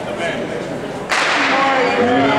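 Starter's pistol fires once, a sharp crack about a second in that starts the hurdles race, and voices rise right after it.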